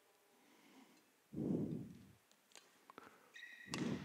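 Sounds of a badminton rally on an indoor court: a couple of dull thuds from players' feet, a few faint sharp clicks of racket strikes on the shuttlecock, and a short shoe squeak on the court surface near the end.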